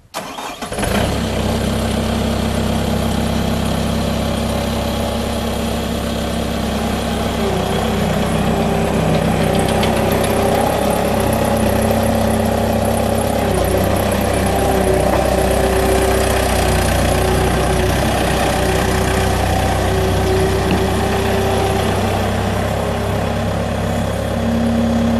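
Kubota four-cylinder diesel engine of a 2006 Bobcat T300 tracked skid steer cranking briefly and catching right at the start, then running steadily as the machine is driven and turned. A steady whine joins the engine sound about seven seconds in.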